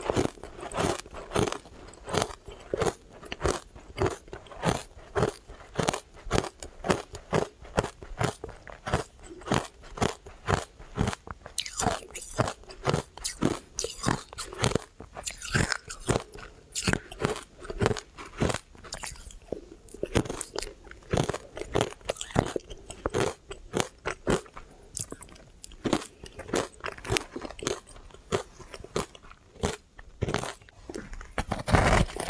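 Close-up chewing of refrozen shaved ice coated in matcha powder: a steady run of crisp crunches, about three a second, as the ice is bitten and chewed.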